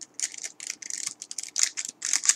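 Small plastic spice sachet being torn open and handled over a cup of instant noodles, crinkling in quick, irregular crackles.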